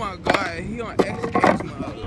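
A flat board clacking and scraping on a concrete sidewalk as a person jumps onto it and lands on it, with voices calling out over it.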